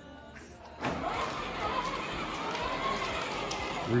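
Electric ride-on toy quad's four motors and gearboxes whirring steadily as it drives forward, starting about a second in.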